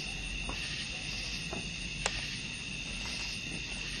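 Night insects trilling steadily in a high, even band, with one sharp click about halfway through.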